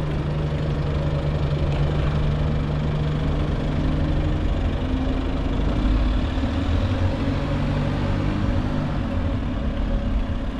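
A bus engine running just ahead, its note rising as the bus pulls away a few seconds in, over a low rumble of wind and road on the microphone.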